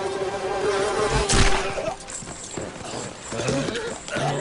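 Film soundtrack: a sustained music chord that fades out about two seconds in, a sudden loud burst of noise just over a second in, then scattered battle noise.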